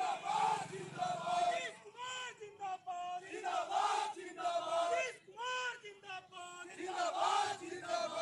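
A group of men shouting slogans together in repeated short calls.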